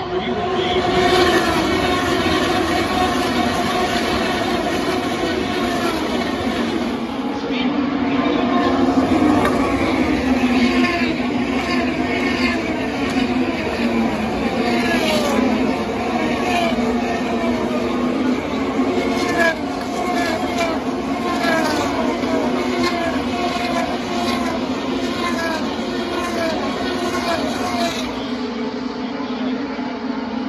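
A field of IndyCars' twin-turbo V6 engines running at racing speed on an oval. It is a continuous, loud drone in which the pitch falls again and again as car after car passes by.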